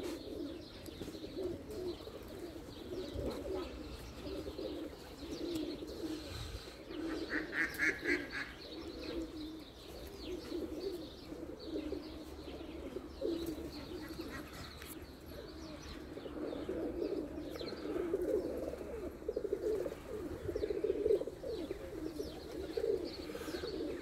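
Domestic pigeons cooing continuously in a loft, several birds overlapping, with a brief higher chirping call about eight seconds in.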